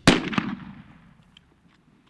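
A single hunting-rifle shot: one sharp, loud crack right at the start, a fainter second crack about a third of a second later, then the sound dies away within about a second.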